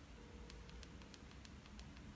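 Near silence: faint room tone with a string of small, quiet clicks.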